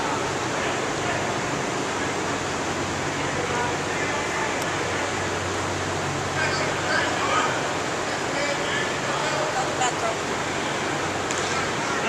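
A steady rushing noise fills a large indoor practice hall. From about halfway through, distant voices of football players and coaches calling out on the field rise over it.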